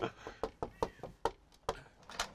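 Knocking on a front door: about seven or eight sharp raps in quick, uneven succession.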